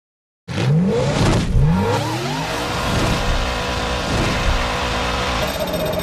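Race car engine revving in a highlights intro sting: two rising revs about a second apart, then a steady high-rpm engine note.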